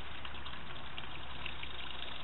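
Steady background noise: an even hiss with a low hum underneath, unchanging throughout.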